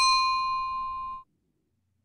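A single bell-like ding chime: one sharp strike followed by a clear ringing tone with higher overtones that fades for about a second and then cuts off suddenly. It is the cue signalling the start of an exercise set.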